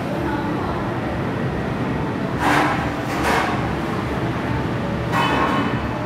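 Stainless steel stool pushed across a tiled floor, its metal legs scraping and rumbling steadily, with three short, louder screechy scrapes.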